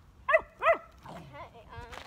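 A puppy barking twice in quick succession: two short, high-pitched yips about half a second apart.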